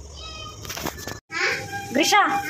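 Indistinct voices, including a young child's, with a brief dropout of all sound just past a second in.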